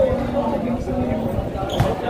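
A basketball is bounced once on a concrete court near the end, over people talking and chattering around the court.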